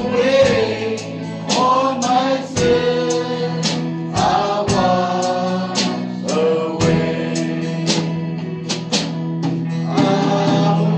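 A man sings a gospel worship song into a microphone over steady instrumental accompaniment with a regular beat.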